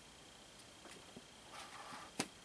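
Near silence: quiet room tone with a faint steady high whine and faint handling noises. There is a small tick about a second in and a light rustle near the end, as hands move around a small cardboard toy box on a tabletop.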